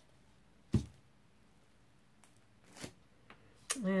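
Plastic paint cups being handled on a work table: one sharp click a little under a second in, then a few fainter clicks and a short scrape as a cup is set down and another picked up.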